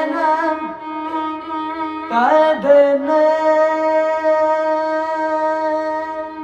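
Carnatic music: a slow melodic passage on violin and voice over the steady hum of an electronic tanpura drone, with no drum strokes, settling into a long held note for the last few seconds.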